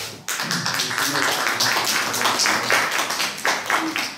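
Audience applauding. It starts suddenly a moment in and dies away near the end.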